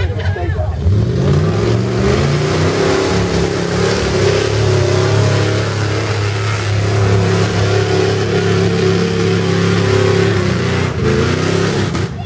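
A 1970s Ford pickup's engine revving hard under load as the truck churns through a mud bog pit. The pitch climbs about a second in, then holds high, wavering with the throttle, and drops off just before the end.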